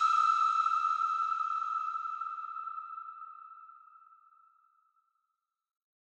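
The final note of an electronic dance track: a single high ringing tone, struck just before, holding one pitch and fading out over about four and a half seconds.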